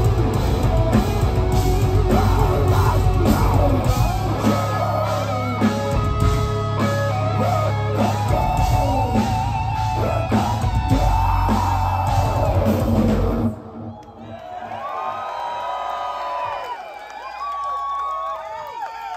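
Melodic death metal played live by a full band, with distorted guitars, bass, keyboards and drums, that stops sharply about three-quarters of the way through. The crowd then cheers, yells and whoops.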